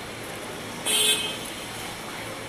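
A short vehicle horn toot, about half a second long, about a second in, over a steady outdoor hum.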